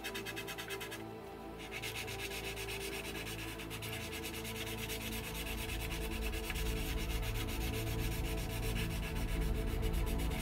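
Hand sanding of a plastic model kit's filled seams, a steady rubbing, over background music.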